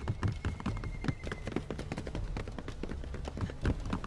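Many quick footfalls from several people running, a dense series of short knocks over a low rumbling bed, from the drama's sound track.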